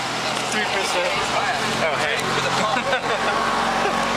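Several people chatting and calling out over a steady low hum, like a motor idling.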